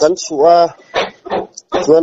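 A man's voice speaking in short, broken phrases with brief pauses between them.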